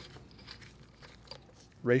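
A few faint, short clicks of small steel valve parts being handled by gloved hands as the pivot is taken off the treater valve's diaphragm assembly.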